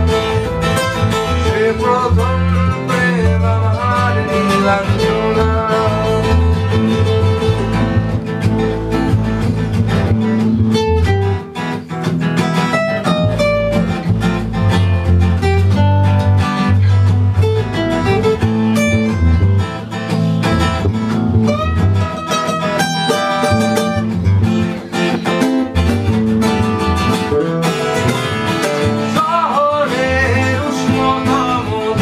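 Electric bass guitar and two acoustic guitars playing together in a live band, with steady strummed and picked chords over a bass line.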